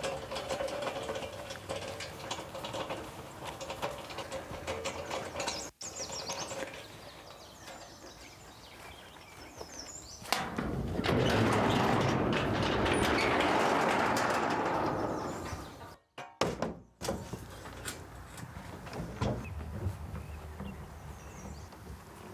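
A metal hand truck rattling as it is pushed across grass. Later a sectional overhead garage door rattles for about five seconds as it is raised; this is the loudest sound. Near the end come a few light knocks as a heavy wooden dresser is tipped and moved.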